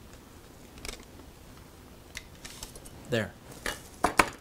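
A few faint, light clicks and taps of a steel rule being handled against wood and paper, with a sharper click at the very end.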